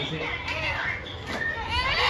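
Young children's high-pitched voices chattering and calling out, with a steeply rising call near the end.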